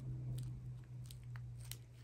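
Small plastic zip-lock bags of diamond-painting drills being handled, with faint crinkling and a few light, sharp clicks, over a faint steady low hum.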